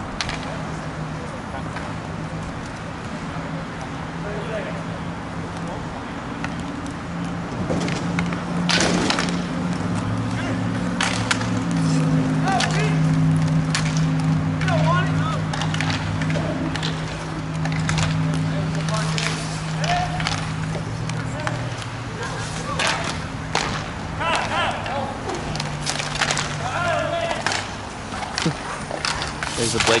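Inline roller hockey in play: sharp clacks of sticks and ball, knocks against the rink boards and skate wheels rolling on the court, growing busy from about eight seconds in, with players' shouts. A steady low hum runs underneath.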